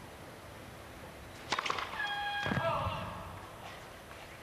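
A spectator calls out a short held shout over the stadium's steady background hiss between points, just after a few quick sharp clicks.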